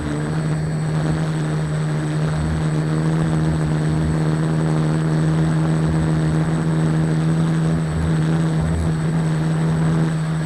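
Small quadcopter's electric motors and propellers in flight, heard from its onboard camera: a steady hum with a strong single pitch and a noisy rush of propeller wash over it.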